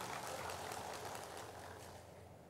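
Audience applause, faint and dying away.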